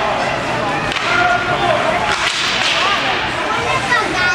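Ice hockey game sounds: skates scraping and sticks hitting on the ice, mixed with spectators' shouts and calls.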